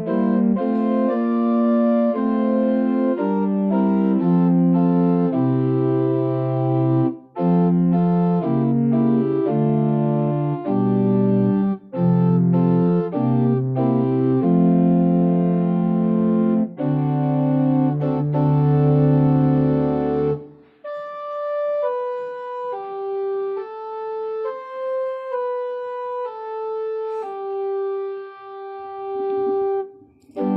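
Church organ playing a slow offertory piece in sustained chords over a bass line. About twenty seconds in, the bass drops out and a quieter single melody line of held notes carries on alone.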